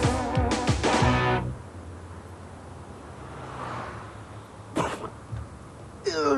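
The last bar of a pop theme song with guitar and drums, ending on a held chord that cuts off about a second and a half in. After that comes a quiet stretch, broken near the end by a short, sharp sound.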